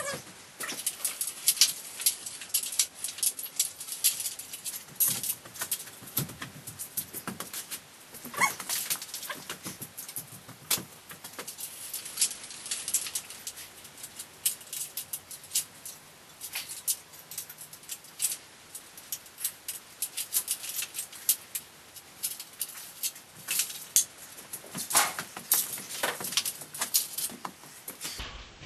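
Dense, irregular clicking and creaking from the giant six-legged robot's metal frame and leg mechanisms as it stands and shifts on its own legs.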